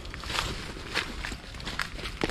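Footsteps crunching on dry leaf litter along an overgrown forest path, in irregular steps several times a second.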